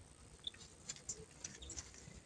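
Quiet, with a few faint, scattered soft clicks and ticks.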